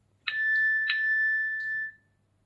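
Fire-Boltt Gladiator smartwatch sounding its find-device alert tone. A clear electronic chime strikes twice in quick succession, then holds one steady note that cuts off just before the end.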